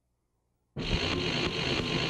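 Near silence, then about three-quarters of a second in an electronic music soundtrack cuts in abruptly: a dense, hissy, noise-like texture with a faint rapid pulse.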